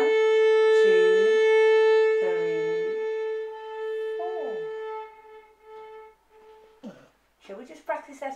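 A single long violin note, bowed and held on one steady pitch, fading gradually away to nothing over about seven seconds. It is a diminuendo on a piece's last note, played with a slowing bow drifting toward the fingerboard and pressing less.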